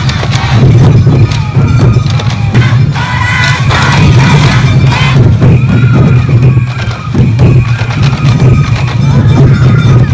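Dozens of waist-slung taiko drums of a Sansa Odori parade beaten together in a loud, dense rhythm. A flute melody and crowd voices carry over the drumming.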